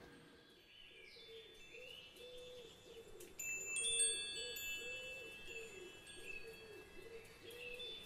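Faint chimes ringing: several high tones strike one after another a few seconds in and ring on. Under them are faint bird chirps and a low wavering tone that repeats about twice a second.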